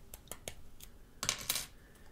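Small metallic clicks and scrapes of a paperclip poking at the SIM-tray eject hole of an iPhone 5S, with a louder cluster of light clicks about a second and a quarter in.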